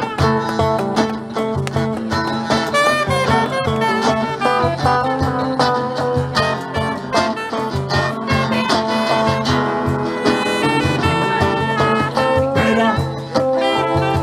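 Live blues band playing an instrumental passage with no singing: an electric guitar over acoustic guitar and a steady cajón beat.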